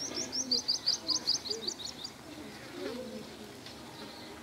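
A small bird chirping: a quick run of short, high notes, about eight a second, for the first two seconds. Fainter low, curving sounds lie under it.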